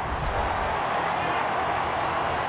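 Steady background noise from the match broadcast, with a short swoosh from the logo wipe transition about a quarter second in.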